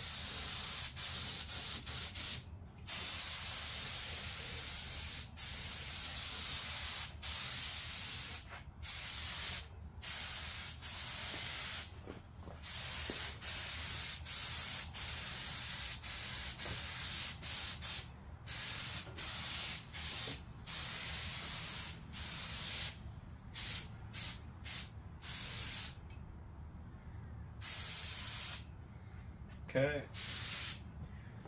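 Compressed-air gravity-feed paint spray gun hissing in bursts as the trigger is pulled and released: long passes through the first half, then shorter, quicker bursts. A faint steady low hum runs underneath.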